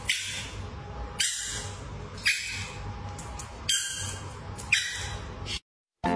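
A dog giving short, sharp, squawky calls, five of them about a second apart, cut off suddenly just before the end.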